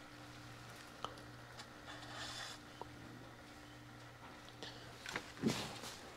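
Faint, steady low hum, with a few light clicks and a short soft rustle about two seconds in.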